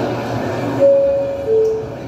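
Recorded train sound played over the hall's loudspeakers: a rushing rumble, then two held horn-like tones about a second in, the second lower than the first.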